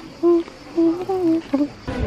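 A woman humming a tune in short, steady held notes. Near the end it breaks off suddenly into a dense wash of outdoor crowd noise.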